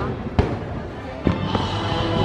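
Two fireworks bangs about a second apart, over music playing in the background.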